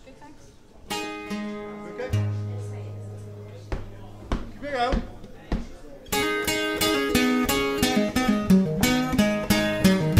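Acoustic guitar: a couple of chords struck and left to ring, then steady rhythmic strumming begins about six seconds in, opening the song.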